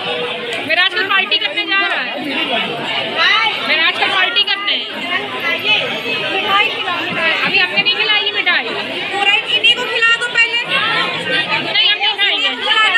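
Several people talking at once: loud, overlapping chatter of a crowd of guests with no single clear voice.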